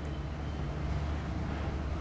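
Steady low hum with a faint even hiss: the room's background drone between spoken words, with no distinct clicks or strokes.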